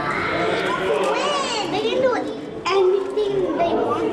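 Overlapping voices of children and adults talking and calling out, with no clear words.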